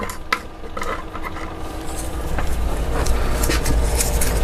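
Small clicks and clatter of tools and parts being handled on a workbench, a few sharp knocks at the start and lighter ticks after, over a low rumble that grows toward the end.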